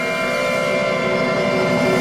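A symphony orchestra holds a dense sustained chord of many steady notes over a rumbling low texture, swelling slightly.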